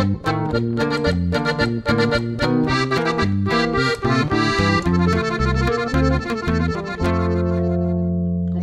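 Piano accordion on its violin register playing a quick norteño melody over alternating bass notes, with a fast run about halfway through, then settling on a held chord for the last second.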